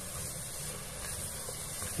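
Soft, steady sizzle of chopped tomato, onion and green pepper sautéing in olive oil in an aluminium pressure cooker.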